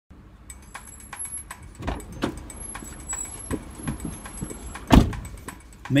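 A person climbing into a parked car's driver's seat: scattered clicks, rustles and knocks, then one loud thump near the end as the driver's door shuts.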